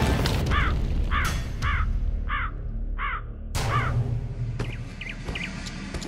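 A bird calling with six harsh, caw-like calls about two-thirds of a second apart over the first four seconds, followed by a few faint short chirps.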